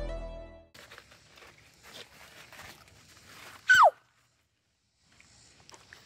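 Background music fading out, then faint rustling footsteps. A little under four seconds in comes a single short, loud call that falls steeply in pitch.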